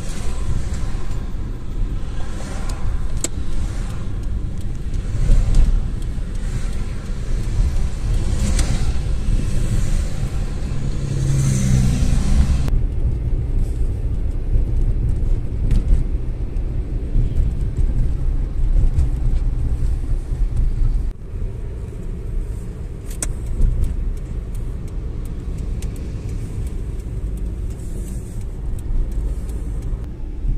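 A car being driven, heard from inside the cabin: a steady low engine and road rumble. The sound changes abruptly twice, about 13 and 21 seconds in, getting duller and quieter.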